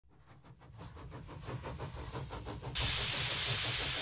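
Logo sound effect: a rapid mechanical rhythm, about six beats a second, fades in, then just under three seconds in a loud, steady hiss of escaping steam cuts in suddenly and holds.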